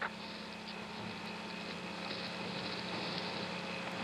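Steady hiss and hum of an open space-to-ground radio channel between transmissions, with no voice on it.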